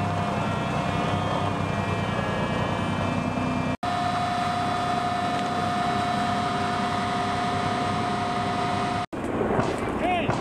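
Eight-wheeled LAV light armored vehicle's diesel engine running, with a steady high whine over the engine note. The sound breaks off for an instant twice where the shots change.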